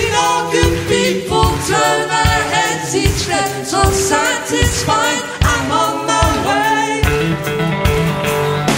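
Live progressive rock band playing, with several voices singing together in harmony over drums and bass; the drum hits fall at a steady beat throughout.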